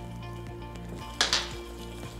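Metal kitchen utensil clinking twice in quick succession against a glass mixing bowl about a second in, over steady background music.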